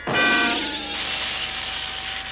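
Cartoon sound effect of roller skates rolling: a steady whirring rush that starts about half a second in, after a brief pitched note.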